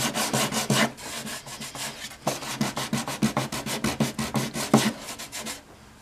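400-grit sandpaper on a hand block rubbed in quick back-and-forth strokes over the paper-covered back of an archtop guitar, knocking down the ridges of the creases. The strokes stop shortly before the end.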